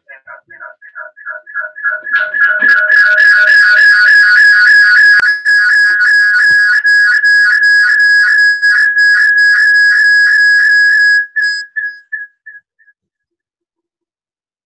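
Audio feedback howl (Larsen effect) looping through a video call: a high whistling tone that pulses about three times a second and builds to loud within a couple of seconds. It holds there, then dies away in fading repeats after about eleven seconds. Participants blame one person connected twice to the call.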